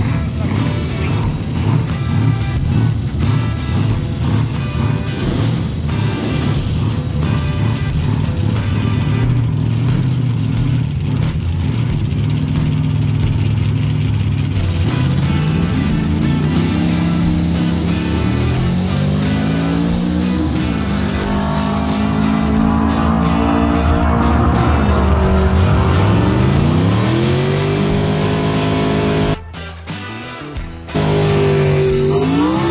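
A car's engine accelerating hard in the second half, its pitch climbing and falling back at two gear changes, over steady background rock music.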